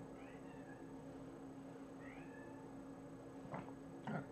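A domestic cat meowing faintly twice: two short calls that fall in pitch, about two seconds apart. The cat yowls like this when it wants chicken skin.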